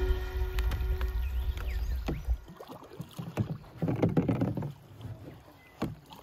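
Kayak paddle dipping and splashing in river water, with dripping and small knocks; the splashy strokes come in the second half. A low rumble fills the first two seconds and then stops.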